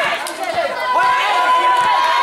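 Spectators chattering and calling out around a youth basketball game, with a basketball being dribbled on a concrete court.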